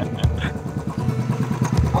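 Motorcycle engine idling with a steady, rapid, even pulse.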